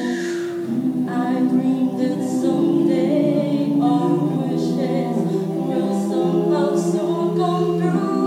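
A mixed group of men and women singing a cappella in close harmony through microphones, with no instruments. Several voices hold sustained chords that change every second or so, with a brief break in the chord just under a second in.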